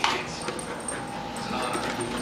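Small dog vocalising in play over a toy: a short sharp yelp-like sound right at the start, fading quickly, then a faint whine near the end.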